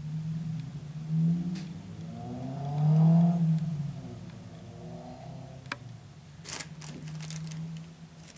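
An engine running, its pitch and loudness rising and then falling off about three seconds in, as with a vehicle revving or passing. A few short sharp scrapes or clicks come near the end.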